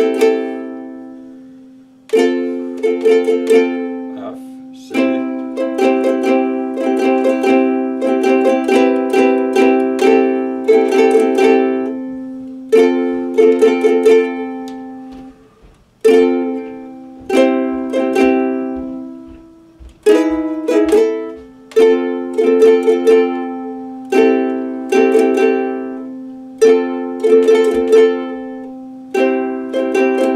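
Ukulele strummed in chords: each chord is struck with a sharp attack and rings out, fading before the next, with flurries of quick strums in between.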